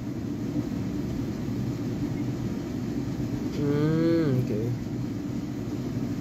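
Steady low room hum, with a man's voice giving one short wavering hum about four seconds in.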